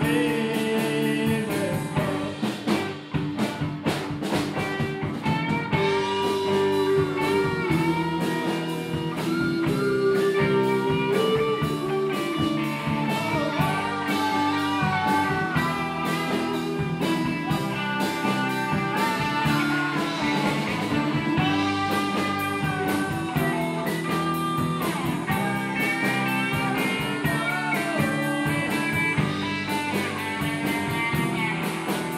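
Live rock band playing: electric guitars and bass over a drum kit, with a melody line bending in pitch.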